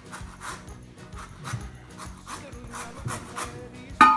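Fresh Eureka lemon being zested on a handheld rasp zester, with repeated scraping strokes at about three a second.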